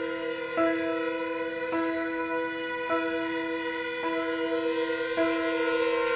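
Slow ambient string-quartet music: a held chord with one note re-sounded about once a second in a steady pulse.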